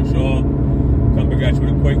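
A man's voice speaking over the steady low rumble of a car driving at highway speed, heard from inside the cabin.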